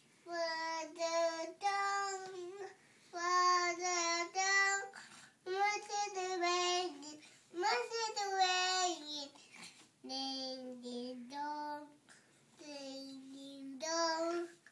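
A toddler girl singing: a string of drawn-out notes in short phrases, with brief breaks between the phrases.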